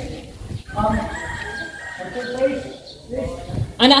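A rooster crowing in the background: one long call starting about half a second in.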